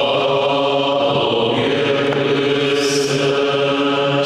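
A group of men's voices singing the liturgical acclamation that answers the Gospel reading, in a chant of long, held notes.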